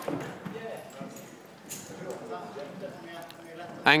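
Indistinct background voices echoing in a large hall, with a few light knocks; a man's voice starts close by near the end.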